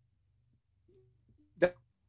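Near silence with a faint low hum, broken about one and a half seconds in by one short, clipped spoken syllable.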